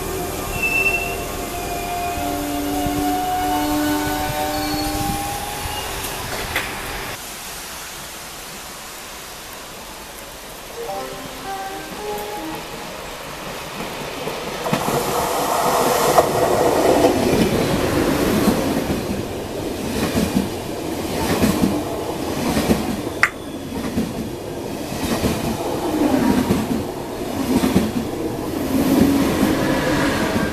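Double-deck RER C electric commuter train (Z2N) moving off along the platform with a rising electric motor whine, fading out about seven seconds in. After a quieter spell, a TGV high-speed train passes through at speed from about the middle onward: a loud rumble with a regular beat as each car's wheels go by, and one sharp click partway through.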